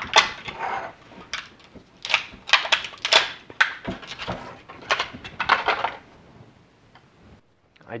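Black plastic heat-shrink wrap being peeled and pulled off a 12V NiCad drill battery pack, crinkling and crackling in irregular bursts for about six seconds, then going quiet.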